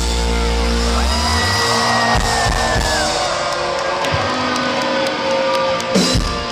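A live rock band lets its final chord ring out on guitars, the low bass dropping away about a second in, while the crowd cheers and whoops.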